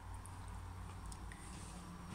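Quiet room tone with a steady low hum and faint handling noises, with no distinct event.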